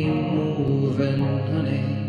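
A man's voice singing a wordless, chant-like line over an acoustic guitar.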